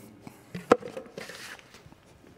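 A single sharp knock about two-thirds of a second in, followed by a few lighter taps and a brief rustle: a small plastic tool being set down on a work table and things on the table being handled.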